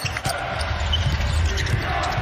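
Basketball being dribbled on a hardwood court, over a steady low rumble of arena sound.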